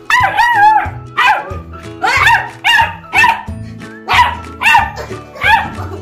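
Beagle puppy barking repeatedly, about eight high barks, the first one longest and wavering in pitch. Background music plays underneath.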